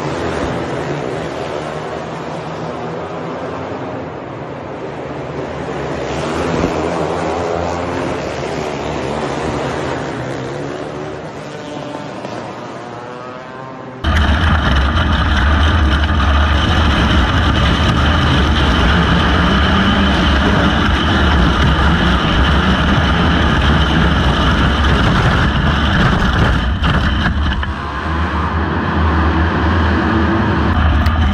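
Outlaw kart engines racing on an indoor dirt track, heard from the stands, their pitch rising and falling as the karts go round. About fourteen seconds in it cuts to the onboard sound of a 250 Intermediate outlaw kart's engine, much louder and steady.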